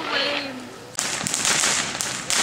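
Ground fountain firework catching about a second in and spraying sparks with a loud, steady hissing rush.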